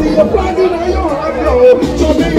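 Crowd voices chattering close by, over loud music with a heavy bass.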